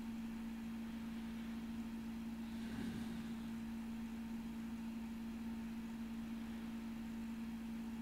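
Quiet room tone: a steady low hum under a faint hiss, with a faint, brief soft sound about three seconds in.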